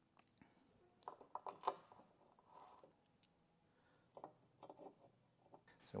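Faint metallic clicks and clinks of small M5 bolts and washers being handled and started into threaded nutserts with a hand driver, in two short clusters: about a second in and again at about four seconds.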